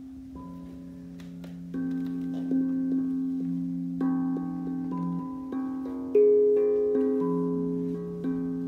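A steel tongue drum played with mallets: separate struck notes, a dozen or so, each ringing on and overlapping the next. One louder, higher note comes a little after six seconds in.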